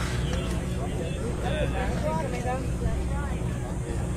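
Several voices talking indistinctly in the background, over a steady low rumble.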